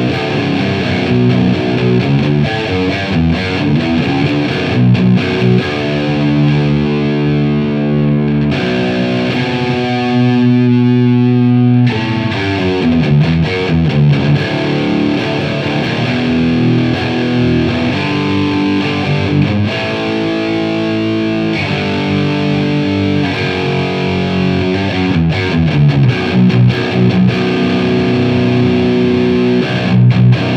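Jackson Pro Plus Dinky DK Modern EverTune 7 seven-string electric guitar with Fishman Fluence pickups, played through the OD2 overdrive channel of a Marshall JVM410H amp: heavy distorted riffing, with one chord held and left to ring for a few seconds about a third of the way through.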